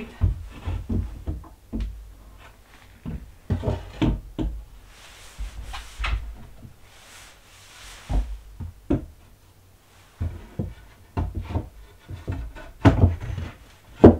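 A wooden shelf board knocking and bumping against wooden brackets and the wall as it is worked into a tight fit: a series of irregular thuds, the loudest cluster near the end.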